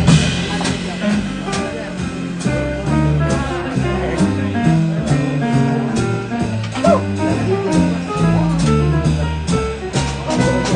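Live jazz from a small band led by a Yamaha grand piano, with a low bass line stepping from note to note about twice a second and drums keeping time on the cymbals.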